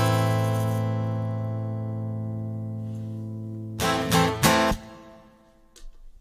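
Acoustic guitar's final chord left ringing and slowly fading, then two short strummed chords about half a second apart about four seconds in, which die away.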